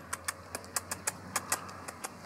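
Light, sharp clicks of steps on paving stones, about six a second and unevenly spaced. They come from a Keeshond puppy trotting on a leash and a person in sandals walking beside it.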